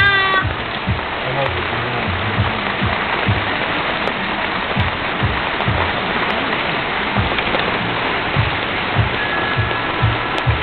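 Heavy rain falling steadily, a dense even hiss.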